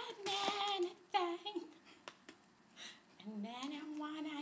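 A woman's voice drawn out in sung, humming tones while she eats a cookie. A quieter stretch in the middle holds a few faint clicks.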